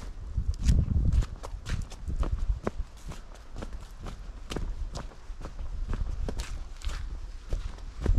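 Footsteps walking along a dry dirt forest path, with irregular sharp crackles and ticks underfoot and low rumbles on the microphone, loudest in the first second.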